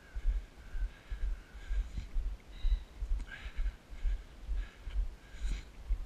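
Wind buffeting the microphone of a camera moving along a road, a low rumble that swells and fades about twice a second.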